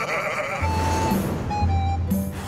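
A high, wavering cartoon-character cackle that fades out about half a second in, then music with held tones and a steady bass note.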